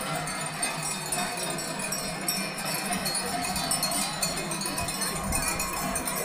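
Bells on a small herd of goats ringing as the animals are driven along the street, with a crowd's voices underneath.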